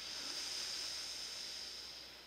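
A long, deep breath through one nostril during alternate-nostril breathing (pranayama). It is a steady airy hiss that swells and then fades away over about three seconds.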